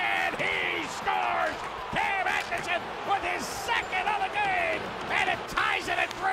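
Hockey play-by-play announcer excitedly calling a goal, his voice rising and falling in long drawn-out shouted syllables, over arena noise.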